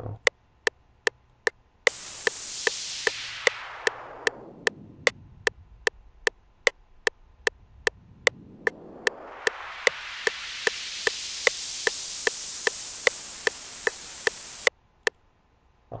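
FL Studio metronome clicking steadily about two and a half times a second, starting with a four-click count-in. About two seconds in, a hiss-like noise sound begins, filtered through a Fruity Parametric EQ 2 band that is dragged by hand to record live automation. The band sweeps from high down to low, then back up to high, and the noise cuts off suddenly about a second before the end.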